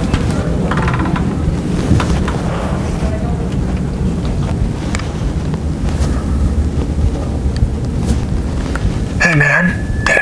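Loud, steady low rumbling noise with a few faint clicks scattered through it. A voice starts near the end.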